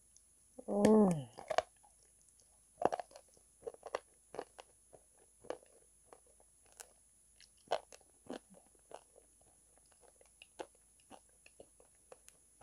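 Close-miked biting and chewing of calabash chalk (ulo, a kaolin clay) coated in a soft brown paste: irregular sharp crunches, a few a second. About a second in, a short hummed "mm" that falls in pitch.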